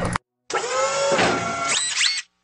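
Synthesized whirring sound effect for an animated logo. It starts about half a second in as a set of held electronic tones and ends with two quick rising sweeps.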